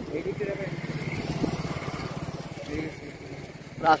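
A small motorcycle engine running on the road, a steady low hum with a fast even pulse that fades out after about two and a half seconds.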